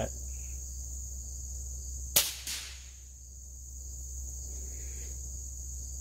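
Crickets chirping steadily, with a sharp crack about two seconds in and a weaker second crack just after it.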